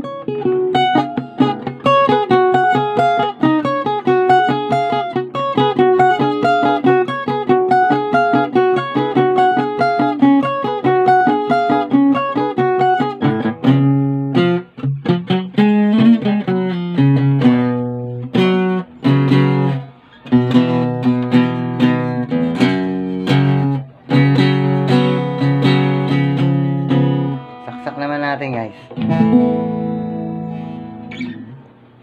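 Cutaway acoustic guitar played fingerstyle: a quick, evenly repeating picked-note pattern for about the first half, then fuller chords with strummed strokes over low bass notes, with a brief drop near the end before a last chord rings.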